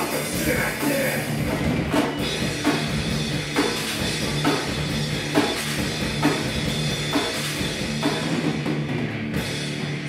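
Live heavy metal band playing an instrumental passage: distorted electric guitars and bass over a drum kit, with a heavy drum hit about once a second.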